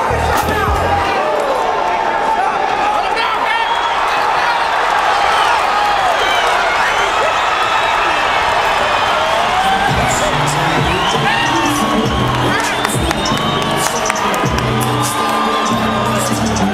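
Boxing crowd cheering and shouting, with many whoops, in reaction to a knockout. Background music with a bass beat drops out about a second in and comes back in about ten seconds in.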